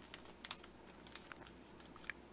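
Origami paper crinkling faintly as fingers fold a flap back and crease it: a few soft crackles, clearest about half a second in and again just after one second.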